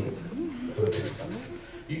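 A man's voice imitating a steam locomotive: a few low hooting sounds that bend up and down in pitch.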